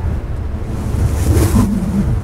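Strong sandstorm wind blowing hard: a deep, steady rumble, with a hissing gust that swells about one and a half seconds in.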